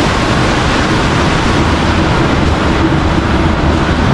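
Steady, loud rushing noise with no distinct events.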